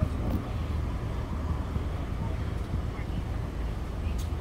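Steady low rumble of idling emergency-vehicle engines, with faint, indistinct voices of people talking nearby.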